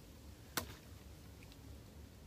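A single sharp click about half a second in, from a plastic water bottle being handled, followed by a much fainter tick.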